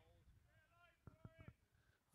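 Near silence with faint voices, and a couple of faint knocks just past the middle.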